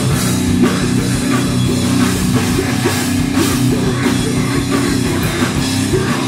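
Live heavy rock band playing loud, with electric guitars, a bass guitar and a drum kit going together at a steady pace.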